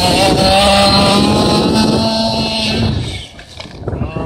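Small two-stroke petrol engine of a Losi DBXL 1/5-scale RC buggy held at high revs, a steady high note, then backing off sharply about three seconds in before picking up again near the end.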